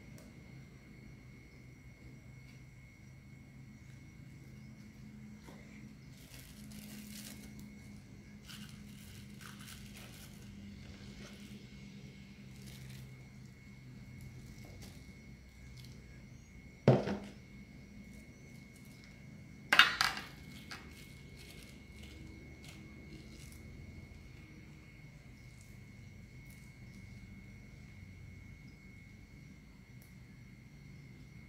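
Faint rustling of thin plastic freezer-pop bags being handled and filled, then two sharp knocks about three seconds apart, the loudest sounds, on the kitchen counter, over a low steady hum.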